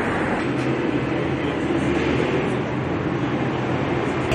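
Steady city street noise: a continuous, even rumble of traffic with no single event standing out.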